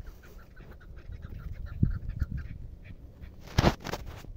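Chukar partridge calling in a quick run of short clucking notes. There are low thumps about two seconds in and a short, loud rustling burst near the end.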